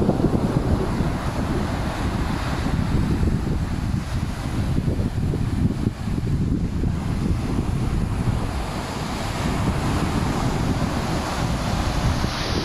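Small waves breaking and washing up a sandy shore, with steady wind buffeting the microphone.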